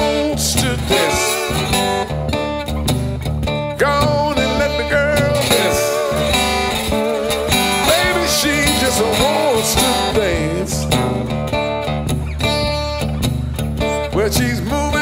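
Blues music played by a band: acoustic guitar over a steady bass line, with a lead melody that slides up and down in pitch.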